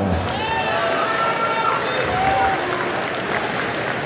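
Spectators applauding and cheering, a steady wash of clapping with some voices shouting from the crowd, as a swimmer is introduced.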